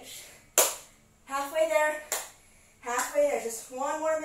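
A single sharp clap about half a second in, then a woman's voice in three short wordless bursts, the sound of exertion mid-workout.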